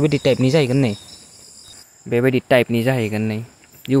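A man talking, pausing for about a second partway through, with a thin steady high-pitched tone underneath.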